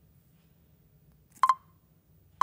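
Near silence, then about a second and a half in a short, sharp double beep at one steady pitch: a smartphone's touch tone as the screen is tapped.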